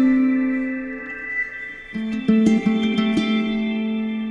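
Instrumental music led by plucked guitar. A held note rings and fades over the first two seconds, then a new run of plucked notes begins.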